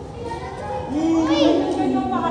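Children's voices calling out, growing louder about a second in with a long held call.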